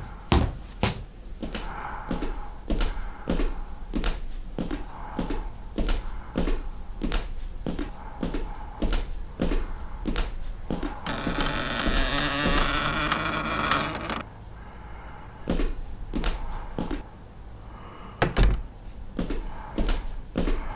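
Footsteps at a steady walking pace, about two a second, sounding in a small room. Around the middle a heavy door creaks open for about three seconds, then a few more steps and one loud thunk near the end.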